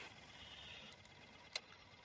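Near silence: faint hiss with a single light click about one and a half seconds in.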